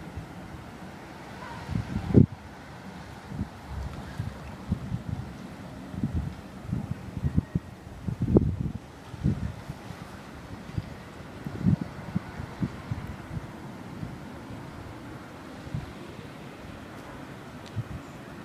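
Wind buffeting the microphone in irregular low gusts, the strongest about two seconds in and again around eight seconds.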